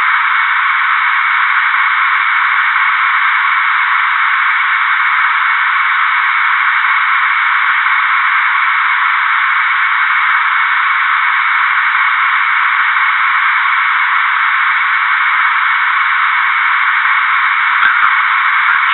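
Steady, even hiss of a reconstructed cockpit voice recorder track, thin and narrow in tone like a radio channel, unchanging throughout.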